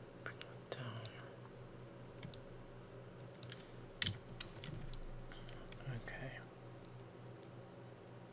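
Scattered computer mouse clicks at an irregular pace, the sharpest about four seconds in, over a steady low hum. A faint breathy murmur from the narrator comes about a second in and again near six seconds.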